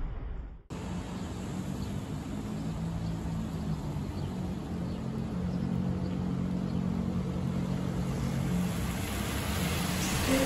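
Street traffic on a rain-wet road: a steady hiss of tyres on wet pavement with a low engine hum from passing cars.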